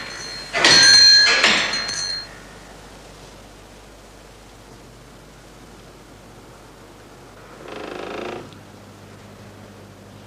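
A small hanging door bell jangling once near the start, ringing with a quick rattle for about a second and a half. A softer, shorter rattle follows about eight seconds in.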